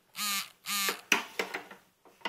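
A cat meowing twice, two short calls of even pitch in quick succession, followed by a few light clicks.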